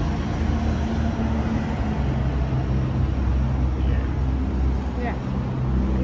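Low, steady engine rumble of a motor vehicle running close by on the street, its pitch shifting slightly about two seconds in.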